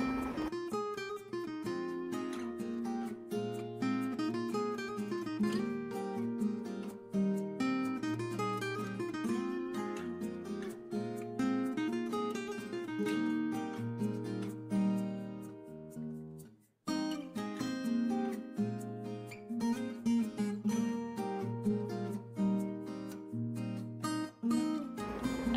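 Background music of plucked acoustic guitar with a lively picked rhythm. It breaks off briefly about two-thirds of the way through, then carries on.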